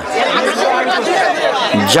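Several people talking at once, their voices overlapping. A single man's voice comes through clearly near the end.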